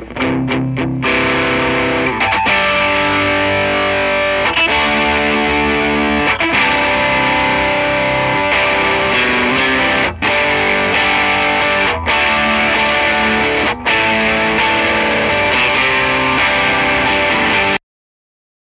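Distorted electric guitar played through a Mesa Boogie DC-3 amplifier on its high-gain channel: a made-up rock riff with a few single picked notes at the start. The playing breaks off briefly about 10, 12 and 14 seconds in and cuts off suddenly near the end.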